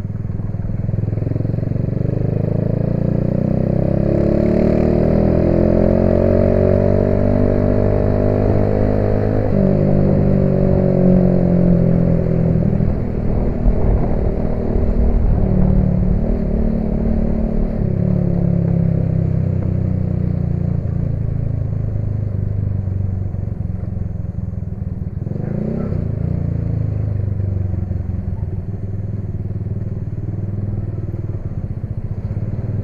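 Motorcycle engine running under way. It rises steadily in pitch as it accelerates for several seconds, drops at a gear change about a third of the way in, then holds fairly steady, with a short rise in pitch again near the end.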